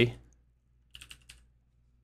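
A brief run of quick keystrokes on a computer keyboard, about a second in, typing a short word.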